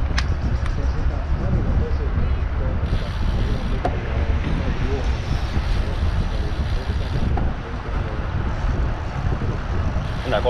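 Wind buffeting the microphone of a camera riding along on a moving road bike, a steady low rumble with a few short clicks.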